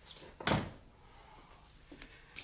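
Wooden office door pushed shut with a single firm thud about half a second in, a faint click of the handle just before it.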